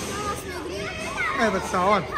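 Children's voices and play noise, with a child's high-pitched shouting or laughing near the end.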